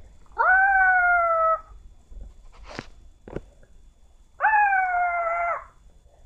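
Two long, steady howls, each about a second long and falling slightly in pitch, with two sharp clicks between them.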